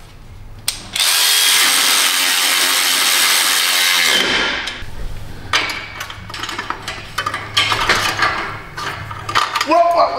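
A power tool runs steadily for about three seconds, driving in an exhaust heat-shield or hanger bolt. It is followed by scattered short clicks and knocks of tools and hardware.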